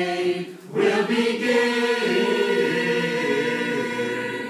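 A choir singing in parts: a held chord breaks off briefly just under a second in, then the voices hold a long sustained chord.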